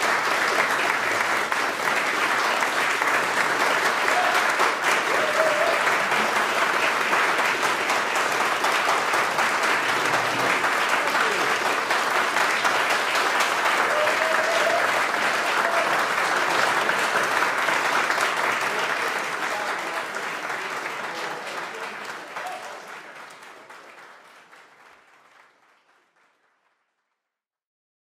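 Audience applauding steadily, with a few voices calling out. The applause dies away over the last several seconds.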